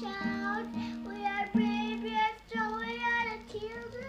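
A young boy singing a song in a high child's voice, in short held phrases, while strumming a nylon-string classical guitar.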